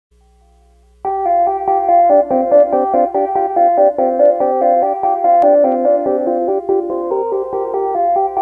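Moog Grandmother analog synthesizer playing a fast sequenced run of notes, starting about a second in. The notes overlap and linger under reverb and ping-pong delay.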